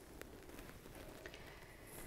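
Near silence: faint room tone, with two faint ticks.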